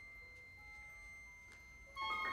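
Near silence with faint, thin, sustained high tones, a few notes coming and going, from a small handheld instrument blown very softly at the mouth.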